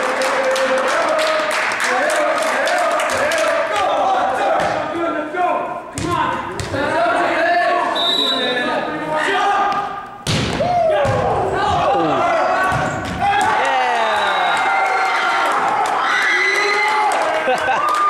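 Volleyball being played in a gymnasium: players and spectators shouting and chattering throughout, and a volleyball bouncing and thudding on the hardwood floor. A sharp hit comes about ten seconds in as a jump serve is struck, with laughter near the end.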